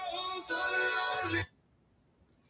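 A short stretch of music with a sung vocal line, cutting off abruptly about one and a half seconds in.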